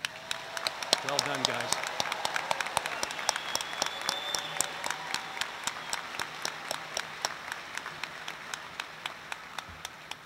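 A large audience clapping, with a few voices cheering about a second in. The applause builds quickly, then slowly thins out.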